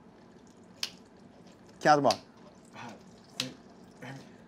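Vodka poured from a glass bottle into a stainless steel mixing tin half-filled with ice, a faint steady trickle. A sharp click sounds about a second in and another near the end.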